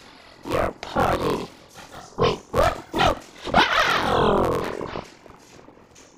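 A person's voice making wordless vocal sounds in character: several short cries, then one longer cry whose pitch falls, fading out about five seconds in.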